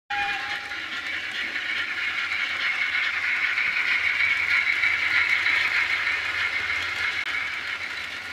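Model trains running on a layout: a steady high-pitched whine over rail noise, easing slightly toward the end, with a short lower tone at the very start.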